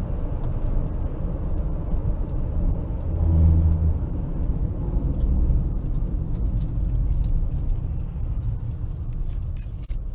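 Car cabin road noise at highway speed, picked up by a dash cam: a steady low rumble of tyres and engine, swelling into a louder hum about three to four seconds in, with light ticking or rattling throughout.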